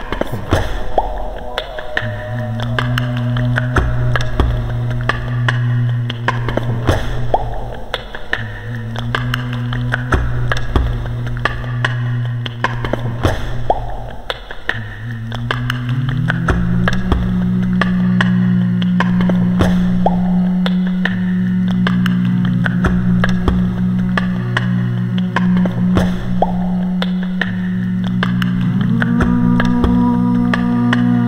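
Live-looped vocal music: low sung drones held in long notes, layered over a looping pattern of beatboxed clicks and hits. About halfway the drone slides up to a higher pitch, and near the end another, higher held layer comes in.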